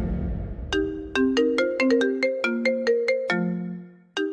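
iPhone ringtone playing: a quick melodic run of short notes, about four a second, starting a little under a second in and closing on a lower held note near the end. It follows a fading low rumble.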